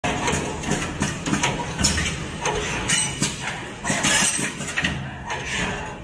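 Automatic drill-bit straightening machine running: a rapid, irregular series of mechanical clicks and knocks, with short bursts of hissing air from its pneumatic cylinders.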